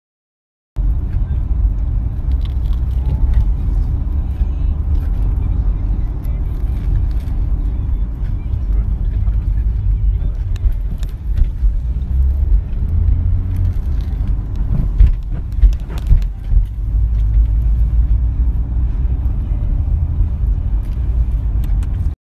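Steady low rumble of a car cabin with the vehicle running, starting suddenly about a second in, with a few sharp clicks and knocks between about ten and sixteen seconds in.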